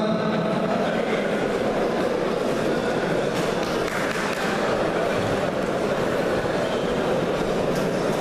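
Audience applauding steadily in a large sports hall.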